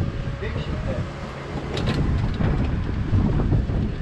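Wind buffeting the microphone, heard as a heavy, uneven low rumble.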